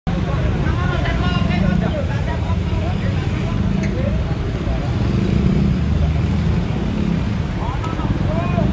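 Roadside location sound: a steady low rumble of passing traffic, with people's voices talking faintly in the background.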